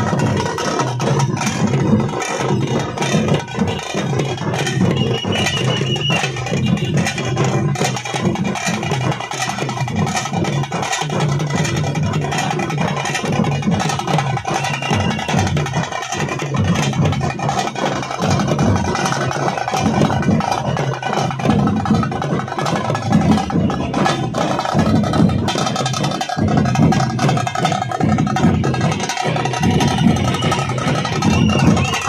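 Procession music: drums beating steadily, with a melody held over them.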